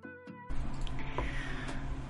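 The last sustained notes of the intro music fade out. About half a second in, the sound cuts to the steady hiss and low hum of a room microphone, with a couple of faint clicks.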